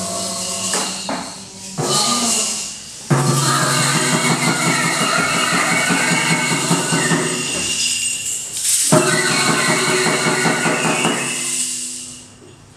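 A group of amateur players performing their own composition from a graphic score on instruments. The full group comes in suddenly about three seconds in, breaks off briefly just before the nine-second mark, resumes, and fades near the end.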